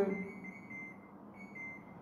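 A faint high-pitched tone that sounds in several short on-and-off stretches, like a beep, behind the tail end of a woman's spoken word.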